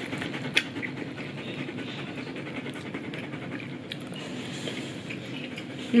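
German Shepherd dog panting steadily, with a couple of faint clicks.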